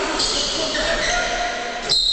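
Sports hall during a basketball game, with a few indistinct voices echoing. Near the end a referee's whistle gives a short, shrill blast.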